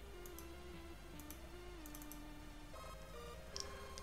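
Faint background music, a slow melody of held notes stepping up and down in pitch, with a few soft mouse clicks.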